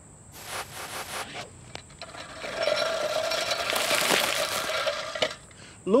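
Hand-push reel lawnmower cutting grass. A few clicks and rustles come first, then a steady whirring clatter of the spinning cylinder blades for about two and a half seconds, which stops about a second before the end. Crickets chirp steadily underneath.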